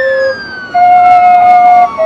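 Loud siren-like electronic tones: a held note that jumps to a higher pitch about a second in, over a whine that slowly slides down in pitch.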